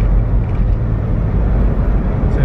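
Car driving along a road, heard from inside the cabin: a steady low rumble of engine and tyre noise.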